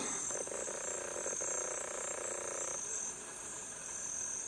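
Steady high-pitched chorus of rainforest insects, with a lower buzzing trill that joins just after the start and stops about a second before the end.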